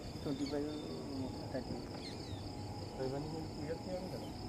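Insects trilling in a steady, high, evenly pulsing chorus, with people talking quietly underneath.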